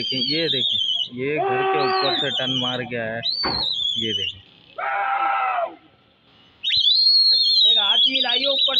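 High, warbling whistles recur several times from pigeon flyers driving a circling flock of pigeons. Between the whistles come long, drawn-out shouted calls.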